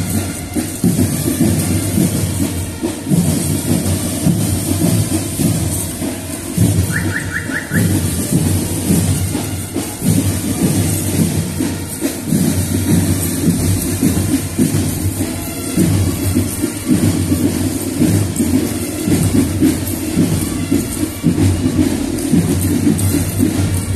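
Marching band playing, with a steady, heavy drum beat.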